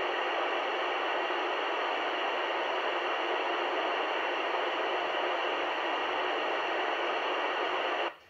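FM receiver hiss from a Yupiteru multi-band receiver tuned to 145.800 MHz, the ISS voice downlink: steady static with the squelch open while no station is transmitting on the frequency. It cuts off suddenly at the end.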